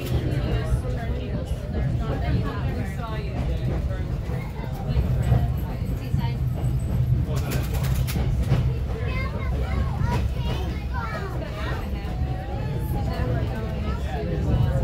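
Low steady rumble of a passenger train coach rolling along the track, with indistinct passenger voices over it and a brief clatter about seven and a half seconds in.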